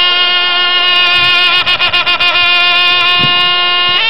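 Traditional Pradal Serey ring music led by a sralai, the Khmer reed oboe. It holds one long, bright, reedy note, with a quick wavering ornament in the middle.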